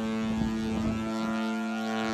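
Ship's horn sounding one long, low, steady blast.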